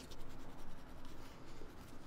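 Manual toothbrush scrubbing teeth, the bristles rasping in quick back-and-forth strokes.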